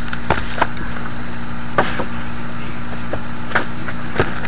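Cardboard card box and a foil-wrapped card pack handled on a table: a few scattered taps and knocks, the sharpest about two seconds in, over a steady background hum.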